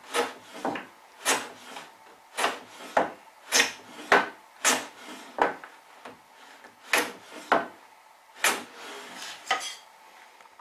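Hand plane shooting the end grain of a mitre on a shooting board: about a dozen short, sharp cutting strokes, with a pause of about a second and a half midway. The plane is aimed at taking a continuous shaving across the end grain.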